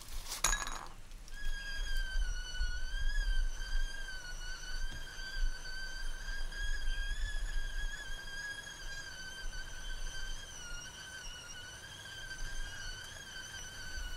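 A few light clinks in the first second, then a high, steady whistling tone that wavers slightly in pitch and holds on, over a faint low rumble.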